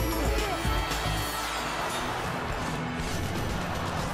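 Music of a short TV-channel closing ident, starting on a sudden heavy hit with a deep low end for about two seconds, with sweeping whooshes over it.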